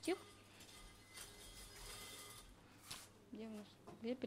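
Quiet room tone in a hall, with the end of a woman's spoken word at the very start and a brief, faint voice about three and a half seconds in.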